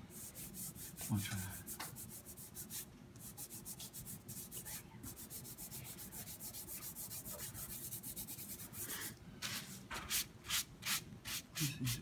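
Hand and fingertips rubbing soft chalk pastel into paper in quick back-and-forth strokes, a dry scratchy swish. The strokes grow louder and more regular near the end, about three or four a second.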